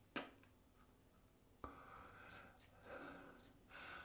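Faint scraping strokes of a brass double-edge safety razor with a Gillette 7 O'Clock Black blade cutting stubble through lather on the chin, starting about a second and a half in. A single sharp click just after the start is the loudest sound.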